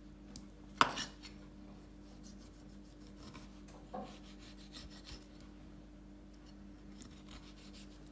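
Santoku knife cutting orange wedges on a wooden cutting board: soft scraping and slicing sounds with a few light clicks, and one sharp knock about a second in that is the loudest sound.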